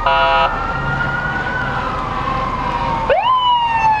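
Fire truck sirens wailing in slow rising and falling glides, with a short horn blast right at the start. About three seconds in, a second siren winds up sharply and then begins a long, slow fall.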